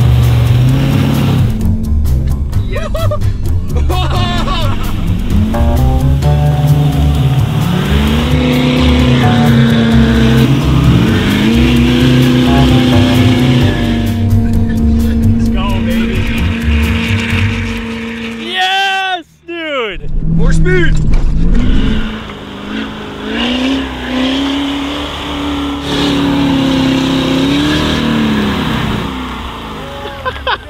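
Ford F-350 pickup's engine revving under load while churning through deep snow on snowmobile-track wheels, its pitch climbing, holding high and dropping back several times. It breaks off sharply for a moment just over halfway through.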